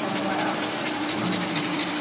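Dark techno in a stretch without the kick drum: a dense noisy texture with rapid ticking percussion over sustained low synth tones.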